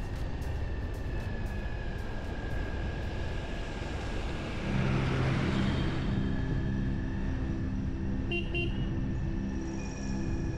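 Wind and road noise from a moving vehicle on a wet road, with steadier low tones joining about halfway through. Two short horn toots come about eight and a half seconds in.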